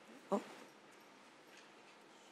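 A single short spoken 'oh' about a third of a second in, then quiet room tone in a council chamber.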